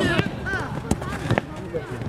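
A football kicked a few times in a passing drill, short sharp thuds with the strongest about a second in, among a coach's call and children's voices.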